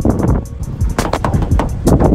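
Background hip-hop music with a steady beat.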